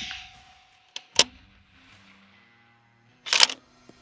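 The tail of a 6 Creedmoor rifle shot dies away, then a single sharp metallic click about a second in and a quick run of clicks near the end: the rifle's bolt being worked to eject the case and chamber the next round between shots.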